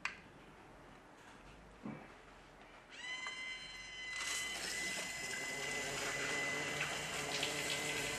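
A 5900-BT water-filter control valve going into its air-replenish cycle. About three seconds in, a steady high whine starts. A second later a rushing hiss of water and air through the valve rises and holds as the valve draws air into the tank and pulls water up the chemical-draw hose.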